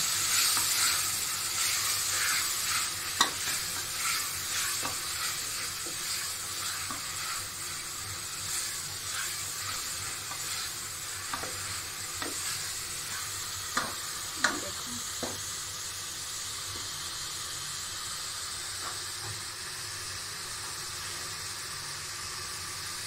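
Browned onions and ginger-garlic paste sizzling in hot oil, stirred with a wooden spoon in a metal pot; this is the paste being fried until its raw taste is gone. The sizzle slowly eases, and the spoon gives a few sharp knocks against the pot, two of them close together about two-thirds of the way in.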